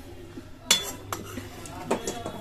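Metal spoon clinking and scraping against a metal cooking pan while scooping out chicken curry. There are three clinks: the loudest, with a short ring, comes about two-thirds of a second in, and smaller ones follow near the middle and the end.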